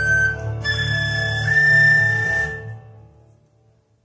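Concert flute closing a piece: a short high note, then a long held final note that dies away about three seconds in.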